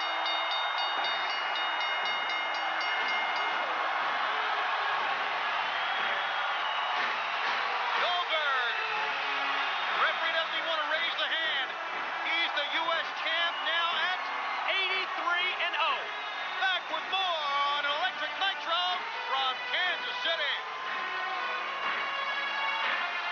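Large arena crowd cheering and shouting. From about a third of the way in, individual shouts and whoops rise and fall above the crowd noise.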